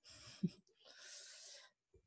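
A soft breath into the microphone, lasting most of a second, with a brief short sound from the mouth just before it.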